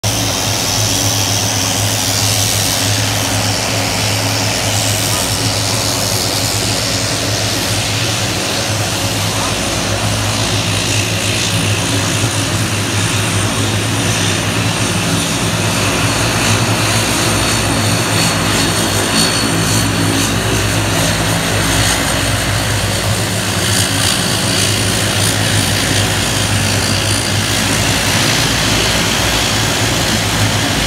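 Turboprop airliner engines running steadily on the ground: a loud, even propeller drone with hiss above it, holding without a clear rise or fall.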